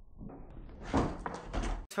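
Skateboard on a concrete floor: wheels rolling, a sharp clack from the board about a second in, then a few lighter knocks.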